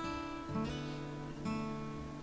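Background music: acoustic guitar playing plucked notes that ring on, with new notes struck about half a second and a second and a half in.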